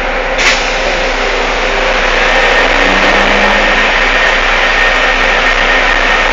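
Cabin noise inside a moving BRT bus: steady engine and road noise that grows louder about two seconds in, with a short click about half a second in.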